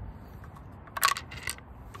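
Two sharp mechanical clicks, about half a second apart and about a second in, from handling the mechanism of a Pistelle X68 CO2 less-lethal pistol while loading it.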